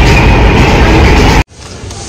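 Delhi Metro train running, heard from inside the carriage: a loud, steady rumble and rushing noise. It cuts off suddenly about one and a half seconds in, leaving quieter open-air background.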